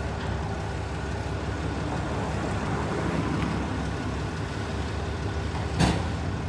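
A truck engine idling with a steady low rumble, with one sharp click near the end.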